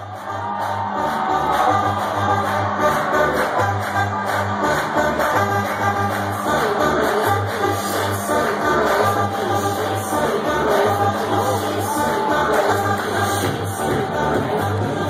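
Electronic dance music from a DJ set played loud over a club sound system, with a bass line pulsing in a steady beat. It swells up over the first second or two, then holds at full level.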